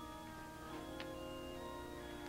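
Quiet background music of soft, sustained held notes that change chord once or twice, with one faint tick about a second in.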